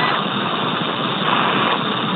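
Steady hiss of an open spacecraft radio loop between transmissions, cut off above the narrow radio band.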